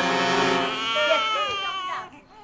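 A loud, high-pitched human cry that wavers and falls in pitch, cut off suddenly at the end.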